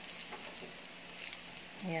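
Sliced garlic sizzling in hot oil in a nonstick frying pan as it browns, a steady hiss with small scattered crackles.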